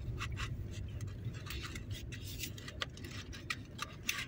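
Low, steady rumble inside a car cabin moving slowly in traffic, with scattered faint scratchy clicks and rubs.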